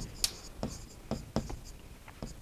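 A marker pen writing on a board: a run of short, faint strokes and ticks as words are written out by hand.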